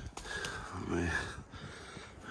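A short low vocal sound, like a grunt or sigh, about halfway through, with a couple of faint clicks before it.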